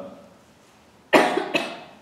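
A man coughing twice in quick succession, a little over a second in.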